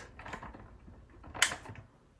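A torchiere floor lamp's switch clicking off: a single sharp click about one and a half seconds in, with faint small handling clicks before it.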